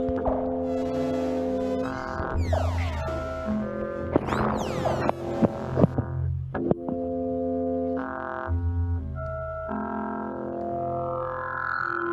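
Electronic music from a browser-based interactive community instrument that several people play together by moving objects. Layered held tones jump to new pitches every second or two, with a few sliding pitch sweeps and scattered clicks.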